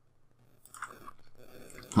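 A pause in close-miked speech: a quiet stretch, then faint mouth sounds and a breath, with the man's voice starting again at the very end.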